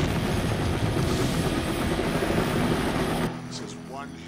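Helicopter rotor chopping loudly and steadily, then cutting off abruptly a little over three seconds in.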